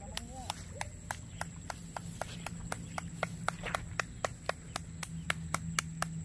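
A person clapping hands in a steady rhythm, about three to four sharp claps a second, quickening toward the end, to scare up egrets.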